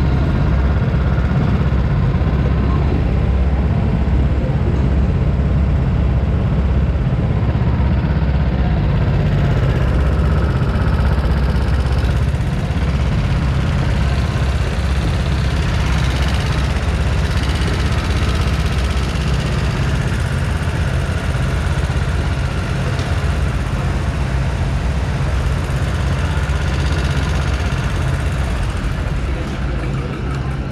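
Rental go-karts running slowly in a pit lane: a loud, steady low rumble that eases slightly in the second half.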